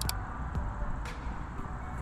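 Low, steady outdoor rumble of wind on the microphone, with a couple of faint clicks.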